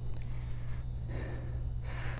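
A person breathing, with soft hazy breaths over a steady low hum.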